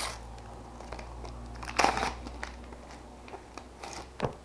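A football-sticker packet being torn open and its wrapper crinkled by hand. The loudest rip comes about two seconds in, among smaller rustles and clicks.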